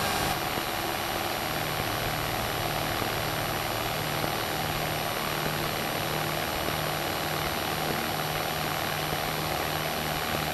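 Citabria's single piston engine and propeller running at takeoff power during the takeoff roll, a steady drone heard from inside the cockpit.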